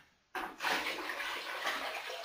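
Water poured from a large pot into a plastic fermenting bucket of sugar wash, topping it up: a steady pour that starts about a third of a second in, after a brief moment of silence.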